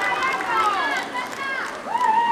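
Several high-pitched voices calling out in short cries that fall in pitch, overlapping one another, with faint clicks underneath.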